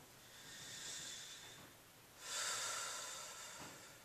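A man taking one deep breath: a slow inhale that swells over about a second and a half, then, after a short gap, a louder exhale that starts suddenly and fades away.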